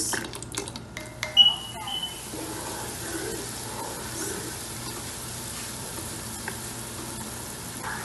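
Blended onions frying in vegetable oil in a pot, a steady sizzle. A slotted spoon clicks and scrapes against the pot during the first two seconds, with one loud knock about one and a half seconds in.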